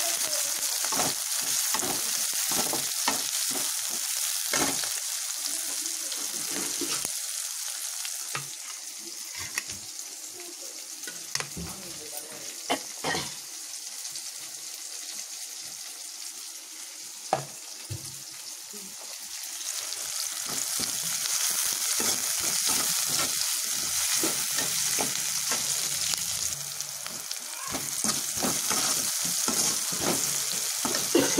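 Sliced onions and chillies sizzling in hot oil in a kadai while a metal perforated ladle stirs and scrapes them against the pan. The sizzle drops for a stretch in the middle, where a few sharp knocks sound, then comes back strong.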